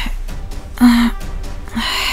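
A woman gasping in distress: a sharp breathy gasp about a second in and another beginning near the end, over background soundtrack music.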